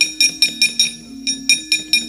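Rapid clanging of the dalang's keprak, the metal plates hung on the puppet chest and struck with the foot, beating about six strikes a second with a short break about a second in. This is the driving accompaniment of a wayang kulit fight scene. Low sustained gamelan notes sound underneath.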